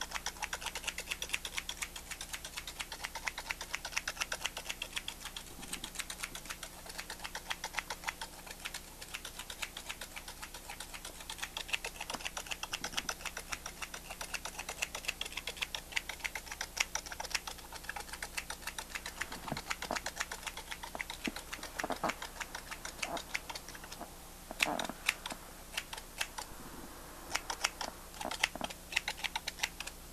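Rapid, irregular light clicking that runs on without a break, thinning to scattered, sharper single clicks over the last several seconds.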